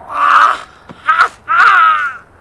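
A man crying out in pain: three wailing cries in quick succession, the first and last the longest.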